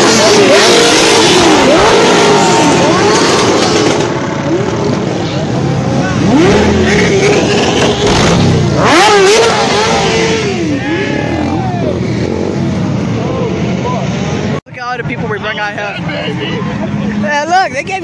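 A group of motorcycles riding past and revving, their engines rising and falling in pitch over one another. After a sudden cut about two-thirds of the way in, it gives way to quieter traffic and people talking.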